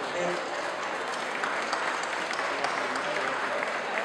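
Audience applauding, a steady clatter of many hands clapping.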